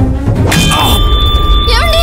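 A sudden metallic clang about half a second in, its ringing tone held on over low background music: a dramatic sound-effect sting in the film soundtrack. Near the end a woman's voice cries out.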